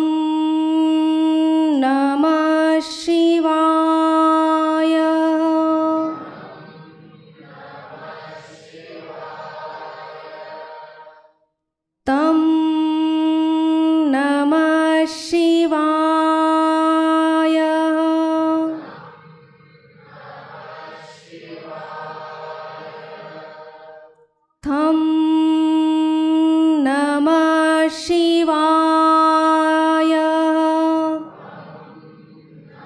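A woman chanting a single mantra syllable into a microphone, holding it on one steady pitch for about six seconds, three times about twelve seconds apart. Between her chants a quieter, blurred chorus of voices chants back. These are seed-syllable chants for the petals of the Manipura (navel) chakra in a chakra meditation.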